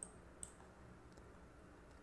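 Two faint computer mouse clicks in the first half second, otherwise near silence with faint room tone.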